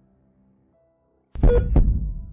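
Heartbeat sound effect: two heavy, low thumps about a third of a second apart, coming suddenly after faint music fades out.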